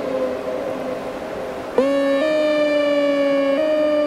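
Electrified keyboard melodica (Hammond Pro-44) played through effects pedals: a held, reedy note fades out, then about two seconds in a new two-note tone enters with a quick upward swoop and is held, stepping to new pitches twice, like a siren.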